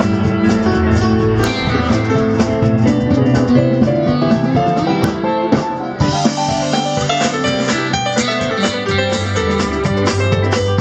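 Live band playing an instrumental passage with no singing: guitar, drum kit and electric keyboard. The sound grows brighter in the highs about six seconds in.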